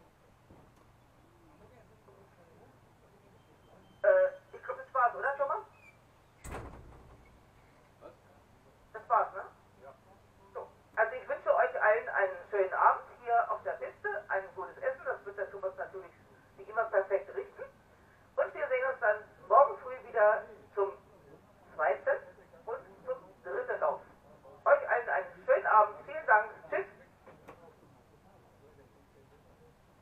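Speech coming through a small loudspeaker, thin and narrow in tone, in short phrases from about four seconds in until near the end. A single sharp click comes about six and a half seconds in.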